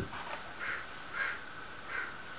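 American crow cawing: three short caws a little over half a second apart.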